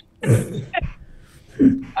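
A man coughing during laughter: one short, sharp cough about a quarter second in, then a brief voiced sound near the end.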